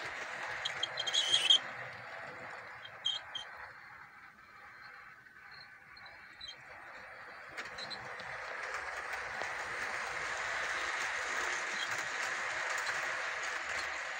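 Model railway trains running on the layout's track: a steady rolling rumble of wheels and motors that fades away about four to seven seconds in and builds again as the trains come back past. A few sharp clicks sound about a second and three seconds in.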